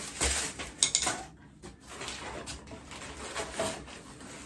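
Unpacking sounds: boards and parts being lifted out of a cardboard box of plastic-wrapped router-table components, with rustling and a few sharp clicks and knocks in the first second or so, then softer handling.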